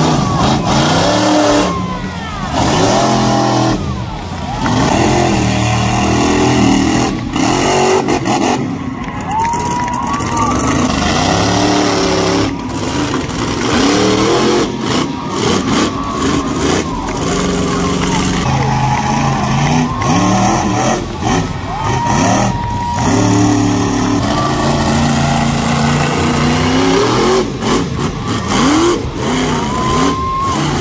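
Monster truck engines revving hard and repeatedly, the pitch sweeping up and falling back every second or two as the trucks race and spin in the dirt.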